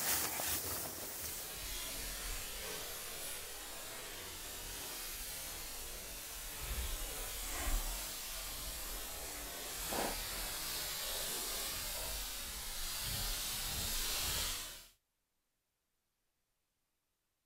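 Steady outdoor hiss with an unsteady low rumble: wind on the microphone in an open field. It cuts off abruptly about a second before the end.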